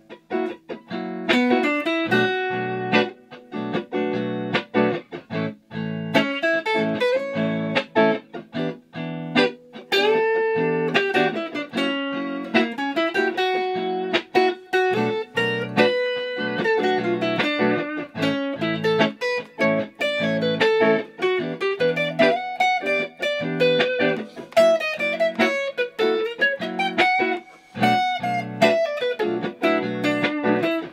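Stratocaster electric guitar played clean, improvising over a chord progression with a mix of chords and single-note lines. There are a few bent or sliding notes, most clearly about ten seconds in.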